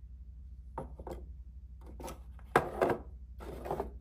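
A model railway station building being handled and set down on a wooden board: a few light scrapes and knocks, the loudest about two and a half seconds in.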